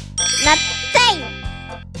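A bright chiming 'ding' transition sound over cheerful children's background music, with two short falling vocal-like glides about half a second and one second in.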